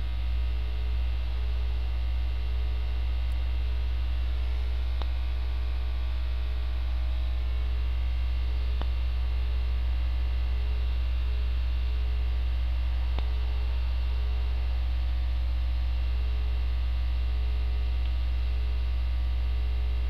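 Steady electrical mains hum, a low buzz with many overtones held at an even level, with a few faint ticks spaced a few seconds apart.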